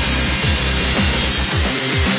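Angle grinder mounted in a cut-off stand, its abrasive disc cutting through a steel rod with a steady grinding noise, under electronic music with a steady beat.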